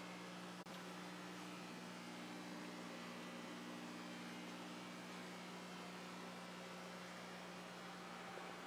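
Faint steady hum with even hiss, room tone with no distinct events apart from a brief dropout under a second in.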